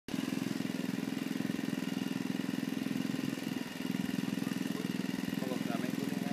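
A small engine running steadily with a fast, even pulse, briefly dropping in level about three and a half seconds in; a voice is faintly heard near the end.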